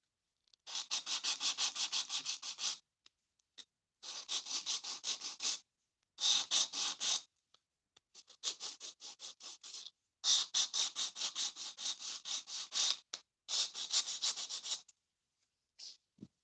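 A hand-held nail-file sanding block rubbed back and forth on a plastic Barbie doll's neck, in quick scraping strokes about seven a second. The strokes come in bouts of one to two seconds with short pauses between.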